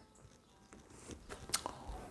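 Faint mouth clicks and lip smacks from a man pausing between sentences, with one sharper click about one and a half seconds in.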